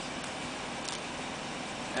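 Steady low hiss of a BMW 5 Series engine idling during a remote-controlled self-parking run.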